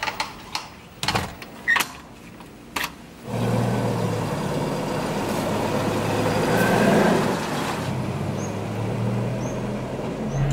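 A few sharp clicks and knocks from a door handle and lock. Then, a little over three seconds in, an old small car's engine starts to be heard running steadily, loudest around seven seconds.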